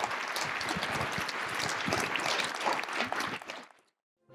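Audience applauding: a dense patter of many hands clapping, which fades out quickly near the end.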